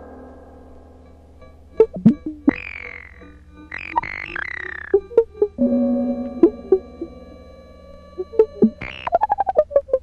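Electronic art music: held synthesized tones with scattered sharp struck or plucked attacks. A bright cluster of high tones sounds in the middle, and a fast run of clicks falls in pitch near the end.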